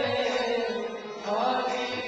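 Devotional chanting (kirtan): long held sung notes over a sustained accompaniment. The singing dips briefly about halfway through, then a new phrase starts on a rising note.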